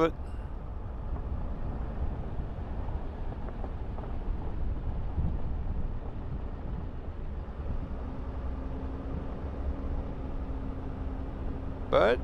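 A vehicle driving along a dirt road: a steady low rumble of tyres and engine, with a faint steady hum joining about eight seconds in.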